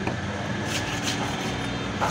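A steady low engine-like rumble in the background, with a few brief high scrapes about a second in as a long knife blade is drawn along a king fish.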